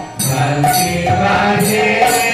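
Devotional kirtan: sung group chanting with regular metallic hand-cymbal strikes, pausing briefly near the start before the next line begins.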